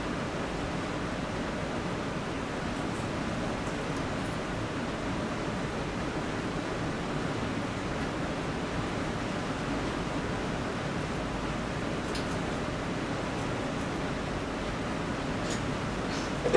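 Steady, even hiss of room tone and recording noise, with a few faint clicks about twelve seconds in and near the end.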